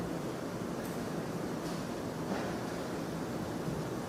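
Steady background hiss of a quiet hall, picked up by the microphone, with a few faint, brief soft sounds.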